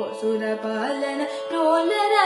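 A young female voice singing a Carnatic vocal line in raga Behag, with gliding, ornamented notes over a steady drone.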